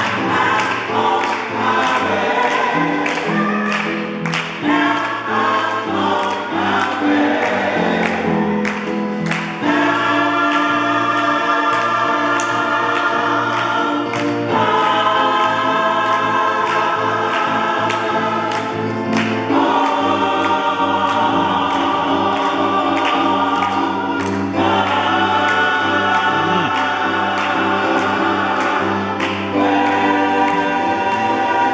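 Gospel vocal ensemble singing together with handclaps on the beat. From about ten seconds in the voices hold long chords, each changing about every five seconds.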